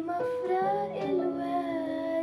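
A young girl singing a melody of held notes into a microphone, accompanied by a Yamaha electronic keyboard.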